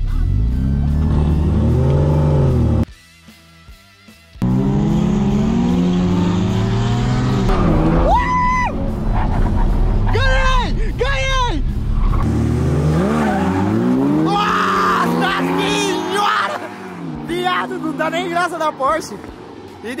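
Jaguar F-Type sports car engine accelerating hard, its revs climbing and dropping again through several gear changes, with tyre squeal in the middle. The sound breaks off briefly about three seconds in.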